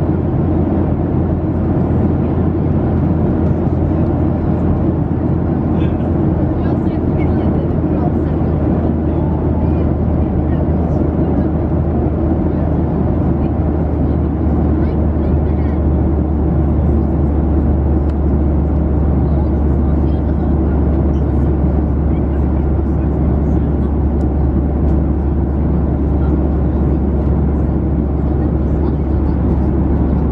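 Steady low roar of airliner cabin noise inside a Boeing 737-700, the engines and airflow heard as an even rumble with a constant hum underneath and no change in level.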